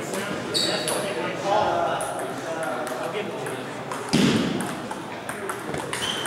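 Table tennis balls clicking off tables and paddles from several tables in a large echoing hall, over indistinct background voices. A louder thump comes about four seconds in.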